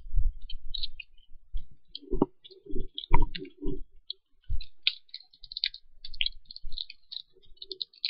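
A person chewing a firm bean-paste jelly with the mouth close to the microphone: many small wet clicks and smacks, with a few short throat or mouth sounds about two to four seconds in.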